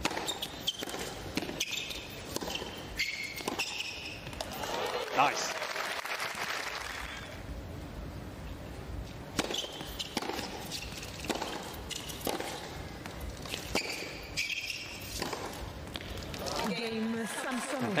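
Tennis balls struck by rackets and bouncing on a hard court during rallies, a string of sharp knocks, with short high squeaks of shoes on the court.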